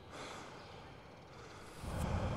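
A person's breathy sigh, an audible exhale swelling just after the start, with a louder low rumbling noise coming in near the end.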